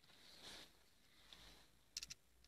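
Near silence: faint soft rustling from hands handling a small pressure switch and its wires, with a couple of small clicks at the very end.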